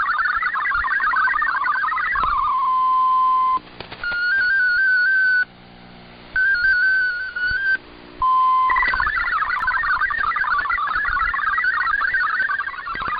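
Shortwave digital-mode data tones received over the air: a fast warbling cluster of tones breaks off about two seconds in into a steady single tone. Two spells of one tone hopping up and down in pitch follow, with hiss between them. Another brief steady tone comes next, and the fast warbling data resumes near nine seconds.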